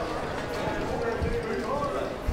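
Indistinct chatter of several people talking in a large exhibition hall, with a few low thumps in the second half.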